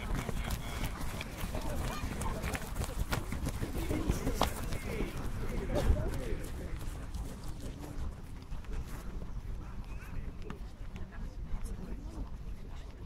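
Footsteps of a group of young footballers jogging across a grass pitch, a run of soft irregular knocks, with indistinct voices in the background; the footsteps thin out in the second half.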